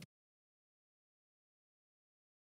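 Dead silence: the audio track drops out completely, with not even room tone.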